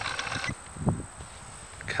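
Small motor driving the geared mechanism of a model sign, running with a rattle and cutting off abruptly about half a second in; a single low thud follows.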